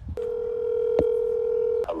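Ringing tone of an outgoing phone call, heard through the phone's speaker. One steady tone lasts nearly two seconds, with a click about a second in, and cuts off as the call is answered.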